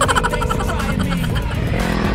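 A man's short laugh at the very start, over background music and a steady low rumble.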